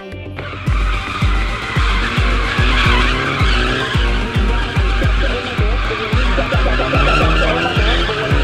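A Nissan Silvia S14 drifting, its tyres squealing in a long, sustained skid that starts abruptly about half a second in. Music with a steady, heavy bass beat, a little over two beats a second, plays over it.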